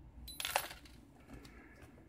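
Metal split rings clinking and jingling as they are set down on a table, one short jangle about half a second in, followed by faint handling sounds.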